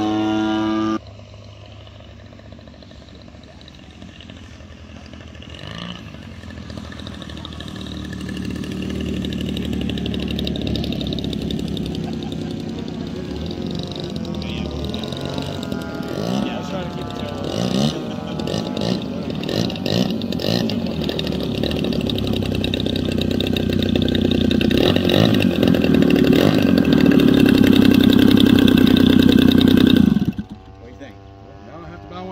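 Gasoline engine (GP-76) of a large RC model airplane: running at high throttle for about a second, then dropping suddenly to a much quieter low-throttle note. Its pitch rises and falls with throttle changes as the plane lands and taxis, and it grows steadily louder, loudest near the end.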